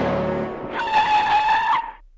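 A rush of noise, then car tyres screeching under hard braking for about a second, cutting off suddenly.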